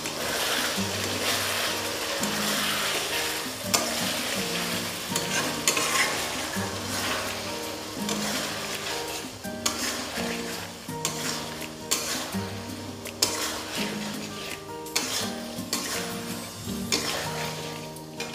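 Pointed gourds in yogurt and spice paste sizzling in hot oil in a kadai while a metal spatula stirs them, scraping and tapping against the pan with irregular sharp clicks: the masala being sautéed (kashano) down. A slow background-music melody runs underneath.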